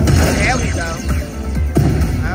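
Ultimate Fire Link slot machine playing its hold-and-spin bonus music and sound effects as the bonus reels spin and fireballs land, with a couple of sharp hits.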